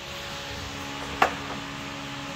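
A single sharp knock about a second in, likely the plastic trim cover being handled, over a steady background machine hum.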